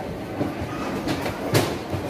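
Busy restaurant ambience: a steady murmur of distant voices with clatter and knocks, the loudest a sharp knock about one and a half seconds in.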